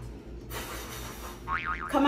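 Comic 'boing' sound effect. A hiss comes in about half a second in, then a wobbling, bouncing tone sounds just before the end.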